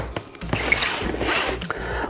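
Packing tape being slit and ripped off a cardboard box: a couple of clicks, then a rasping tear in two pulls lasting about a second.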